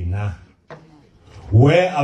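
Speech: a voice talking, broken by a pause of about a second that holds one brief click.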